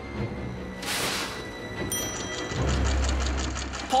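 Cartoon background music with a machine sound effect: a brief whoosh about a second in, then a rapid, even mechanical clatter with a low hum from about halfway.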